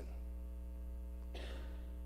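Steady electrical mains hum, a low buzz with a ladder of even overtones, with a faint soft rush of noise about one and a half seconds in.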